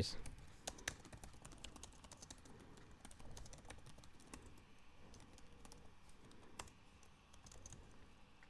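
Faint typing on a computer keyboard: irregular keystrokes in quick runs with short pauses.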